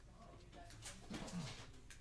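Faint clicks and rustles of plastic as a trading card in a soft sleeve is slid into a semi-rigid card holder. About a second in comes a short, low vocal sound from a man that falls in pitch.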